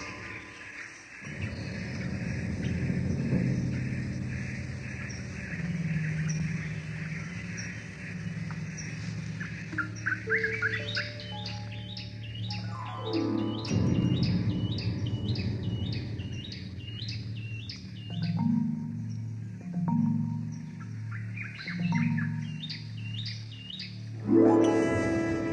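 Background music with sustained low notes. A bird chirps over it in quick repeated calls, about three a second, starting about ten seconds in, and again briefly near the end.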